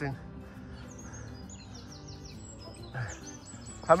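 Small songbird singing: a run of quick, high, downward-sliding chirps about a second in, and another short run near the end.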